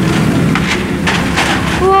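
A steady low engine hum with short bursts of hiss about every second, under people's voices.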